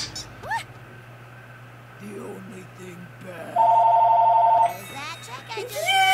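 A loud bell-like ring, two pitches trilling rapidly, lasting about a second midway through, followed near the end by voices.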